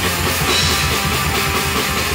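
Hardcore punk band playing live: distorted electric guitars, bass and drum kit at a steady full volume.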